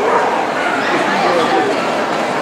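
Steady crowd chatter in a busy show hall, with small dogs barking here and there in the mix.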